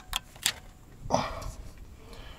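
Three short, sharp clicks in the first half second, then a brief hesitating voiced sound from a man about a second in.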